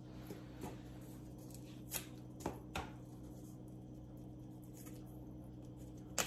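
Hands handling decorative craft eggs, pulling out their hanging strings and setting the eggs down on a paper-covered counter: a few light clicks and taps, clearest about two to three seconds in, over a faint steady low hum.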